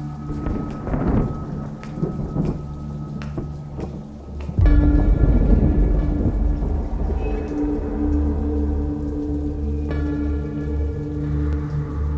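Rain with a sudden loud crack of thunder about four and a half seconds in, followed by a long low rumble. A low, held music drone plays underneath.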